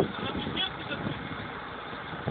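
Truck engine running with a steady low rumble, under faint voices.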